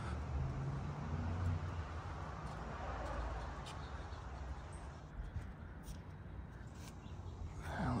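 Quiet outdoor background with no distinct event: a steady low rumble and a faint, even hiss, with a few faint clicks.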